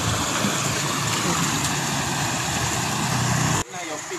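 Shallow river water rushing and churning over rocks close to the microphone, a steady rush that cuts off abruptly near the end.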